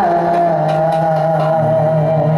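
Bhawaiya folk music: one long held melody note, wavering slightly, over a steady low drone.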